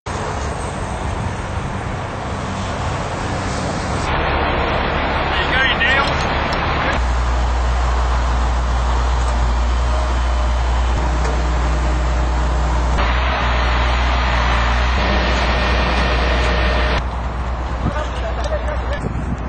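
Steady road traffic noise from a busy freeway. It changes abruptly several times, as separate clips are cut together.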